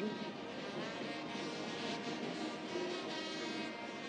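Steady football-stadium ambience from the match broadcast, an even background wash with faint music laid underneath.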